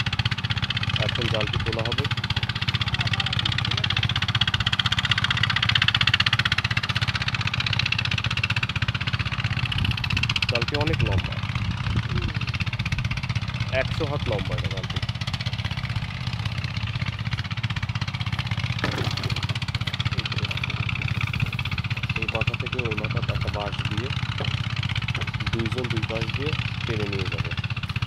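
An engine running steadily at a constant speed, a low even hum with a hiss over it, with no change in speed.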